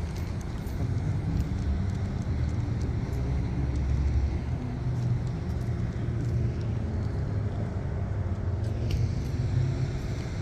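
Steady low rumble of cars in a parking lot, swelling slightly near the middle.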